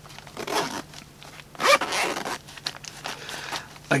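A Cordura nylon pouch being handled and turned over: two main bursts of rasping fabric and zipper noise, about half a second and a second and a half in, with lighter handling noise near the end.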